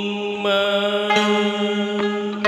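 A man's voice holding one long sung note in a Vietnamese tân cổ song, over plucked-string accompaniment that strikes new notes about half a second and a second in.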